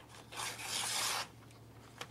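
A rasping rub lasting just under a second, starting about a third of a second in.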